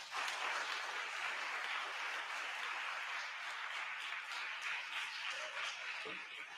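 Audience applauding, breaking out all at once and holding steady.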